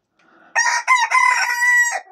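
A Pekin bantam rooster crowing loudly: a few short broken notes and then one long held note, starting about half a second in.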